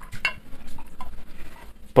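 Spirit being poured from a glass bottle into a small shot glass, with a few light clinks of glass on glass.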